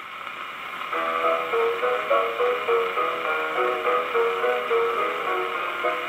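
A 78 rpm shellac disc played acoustically on a Columbia 'Sterling' horn disc graphophone: steady needle surface hiss from the lead-in groove, then about a second in the instrumental introduction of the song begins, thin and narrow-ranged over the hiss.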